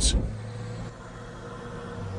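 Stryker eight-wheeled armored vehicle's diesel engine running as it drives, a low steady drone that drops in level within the first second.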